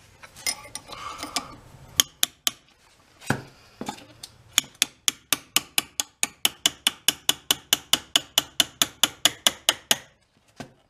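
A small hammer strikes a steel punch held in the eye of a loose ball peen hammer head clamped in a vise, working the eye so the head will fit its handle more tightly. After some handling clatter and a few separate strikes, there is a fast, even run of sharp metal-on-metal taps, about five a second, from about four and a half seconds in.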